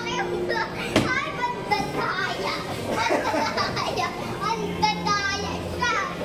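Children shouting and squealing excitedly while at play, their high voices overlapping throughout, with a single sharp knock about a second in.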